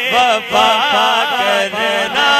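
A man singing a Punjabi devotional kalam into a microphone: a long ornamented line whose pitch wavers and bends, broken by a short breath about half a second in.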